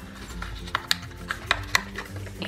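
Soft background music with a steady low melody, with about half a dozen light clicks and taps as a paper card template is fitted onto and slid along the rails of a Memorydex card box.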